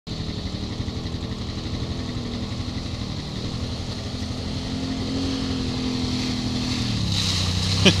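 Can-Am Maverick side-by-side's engine running as it drives toward the listener, growing steadily louder, with the pitch rising as it is throttled up midway and easing off about a second before the end. A short laugh comes at the very end.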